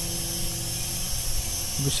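SG900-S GPS quadcopter drone hovering: a steady propeller hum with a constant high whine and hiss.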